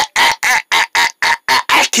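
A person's voice making a rapid run of short, clipped syllables, about four a second, held on one pitch: a vocal imitation of a robot.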